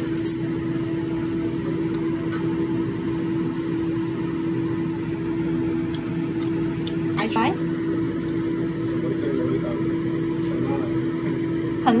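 Steady hum of a kitchen appliance fan with one constant low tone, unchanging throughout, with a few faint clicks and a brief voice about seven seconds in.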